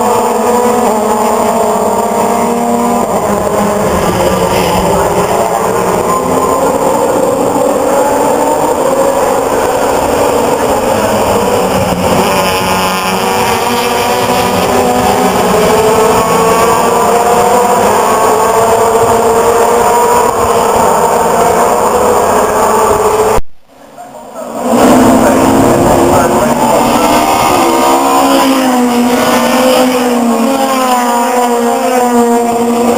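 A pack of British Touring Car Championship racing cars passing at speed, many engines at high revs, their pitch rising and falling as the cars accelerate and change gear. The sound drops out for about a second two-thirds of the way through, then comes back loud with more cars passing.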